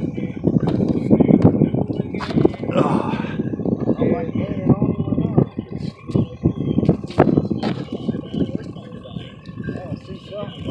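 Loud rustling and knocking close to the microphone as a landing net and the camera are handled in a small fishing boat, thickest over the first half and easing off later.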